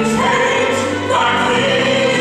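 A stage-musical chorus singing with accompaniment, with held notes that shift to a new chord about a second in.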